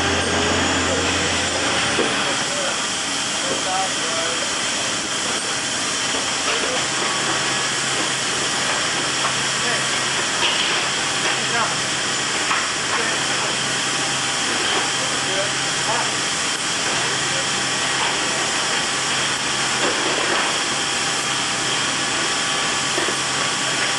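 Steady, loud rushing hiss of the cargo hold of a military transport aircraft, with a low hum dropping out about two seconds in. A few faint metallic clinks come from a tie-down chain being handled on a tracked vehicle.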